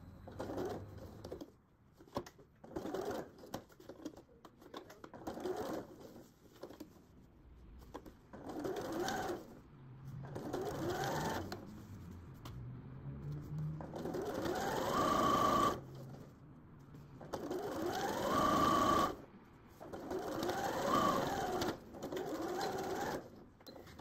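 Bernette b38 computerized sewing machine stitching a seam in a series of short runs with pauses between them. In the longer runs the motor's whine rises as it speeds up, holds, then drops as it stops.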